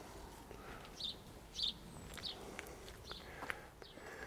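Faint outdoor bird chirps: a few short, high calls spread over about a second and a half, with a couple of light clicks.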